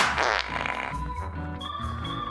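A sputtering fart sound effect in the first second, over jingle music.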